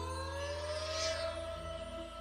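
Cartoon soundtrack: a held synthesized tone rising slowly in pitch over a steady low drone, with a brief whoosh about halfway through.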